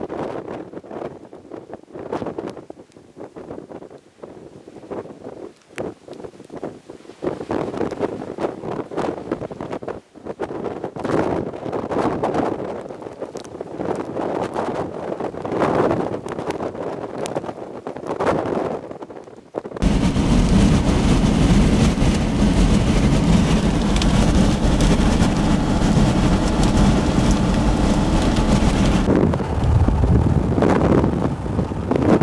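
Gusty wind buffeting the microphone in uneven surges under a severe thunderstorm. About two-thirds of the way through, the sound switches abruptly to a much louder, steady rush of wind and road noise from a moving vehicle.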